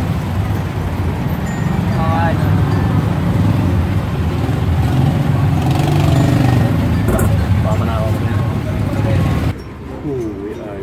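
Steady low engine and road rumble heard from inside the cabin of a moving passenger vehicle, with faint voices over it. It cuts off suddenly near the end.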